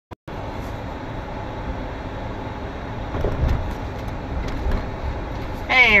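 Steady road and engine noise heard inside a moving Jeep's cabin, with a low bump about three seconds in. A man's voice starts just before the end.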